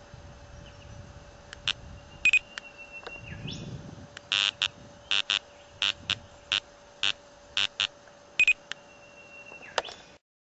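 Electronic beeping from a handheld laser speed gun as it targets an oncoming car: a couple of short pips, a held tone, then a run of about a dozen short beeps, and another held tone near the end. A faint steady hum runs underneath. The laser detector on the car is not alerting.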